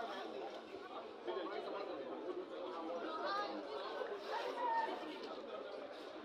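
Indistinct chatter of several people talking and calling out at once around a football pitch, with one voice rising louder about four and a half seconds in.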